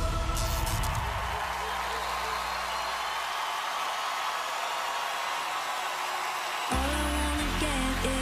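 A large audience cheering and applauding, a dense roar of voices and clapping. Near the end, loud music with a heavy sustained bass cuts in suddenly as the performance begins.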